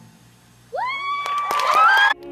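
Audience cheering and applauding as a dance routine's music ends: after a brief lull, one voice lets out a long rising 'woo' about two-thirds of a second in, then clapping and more cheers join and grow louder near the end.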